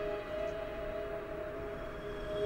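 Soft ambient background music: a few long, sustained tones held steady, quiet and without any beat.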